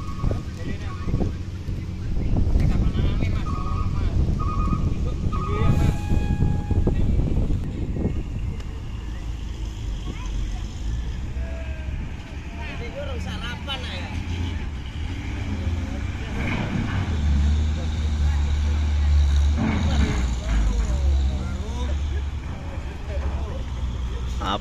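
A heavy diesel truck engine running as the loaded truck drives slowly along the pier and up the ferry's loading ramp. The rumble grows louder for a few seconds past the middle. There are voices of people nearby, and a run of four short beeps comes a few seconds in.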